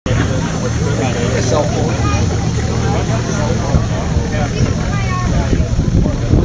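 A truck engine running steadily at low revs, a low rumble under the chatter of a crowd of spectators.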